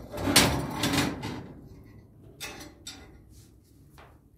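Round cast-iron hob lid of a wood-burning kitchen stove slid back over the firebox opening with a lid-lifter hook, a loud metal-on-metal scrape lasting about a second, followed by two lighter knocks.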